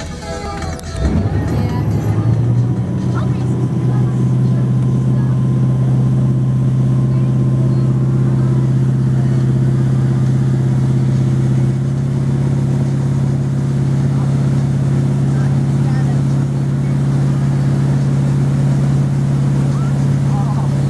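Motorboat engine speeding up about a second in to tow a kneeboarder, then running at a steady, loud drone at speed.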